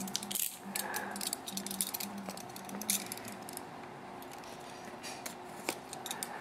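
Utility knife cutting and scraping at a cardboard box's seal, with handling of the box: a run of short scratches and clicks over the first three seconds or so, then only a few.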